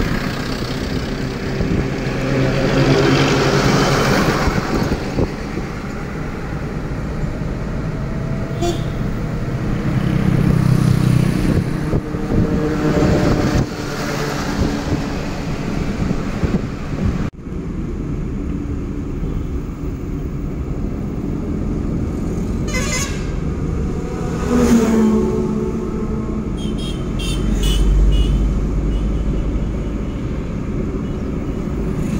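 Road traffic heard from a moving vehicle: steady engine and tyre noise with other vehicles passing, and a sudden change in the sound about seventeen seconds in.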